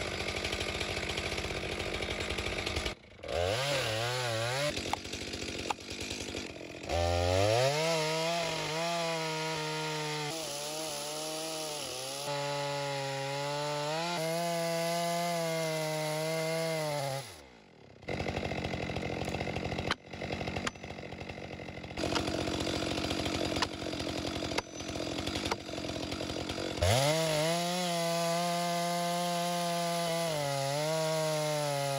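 Stihl MS462 two-stroke chainsaw with a ripping chain on a long bar cutting lengthwise along the grain of a white fir log at full throttle, its pitch wavering as the chain loads in the cut. The engine drops off about two-thirds of the way through, then revs back up and bites into the cut again near the end.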